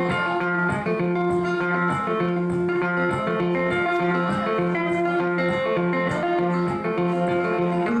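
Solo guitar playing an instrumental passage: picked notes over a low bass note repeated steadily throughout.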